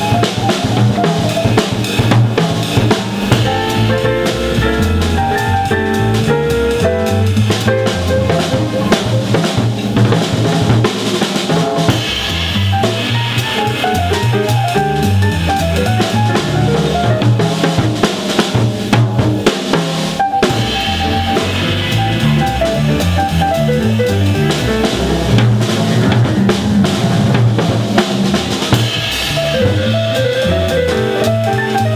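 Jazz piano trio playing live: acoustic grand piano, upright double bass and drum kit with cymbals, in a continuous swinging passage.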